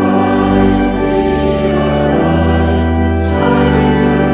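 A choir singing a hymn in sustained notes, with organ accompaniment.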